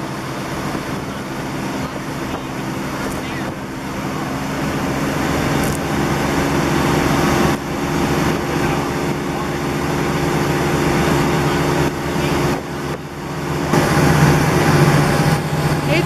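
Motorboat engine running at speed, a steady drone under the rush of water and wind, getting louder near the end.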